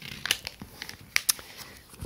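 A translucent sleeve holding small cards crinkling as it is handled and pulled open, a string of short crackles with the sharpest a little over a second in.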